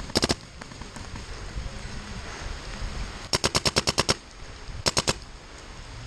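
Paintball markers firing in rapid bursts: a few quick shots right at the start, a string of about ten around the middle, and three or four more near the end, each burst at roughly a dozen shots a second.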